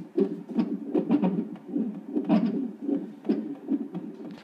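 Fetal heartbeat from a cardiotocograph's Doppler ultrasound transducer, heard through the monitor's speaker as a rapid, even whooshing pulse at about two and a half beats a second. The monitor reads about 150 beats a minute, inside the normal band between bradycardia and tachycardia.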